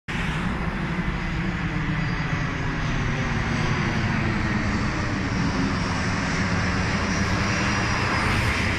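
Steady rumbling drone of an airplane passing overhead, slowly growing louder.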